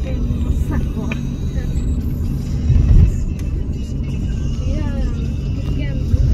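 Engine and road rumble inside a moving car's cabin, with a louder low thump about halfway through as the car jolts over a railway level crossing.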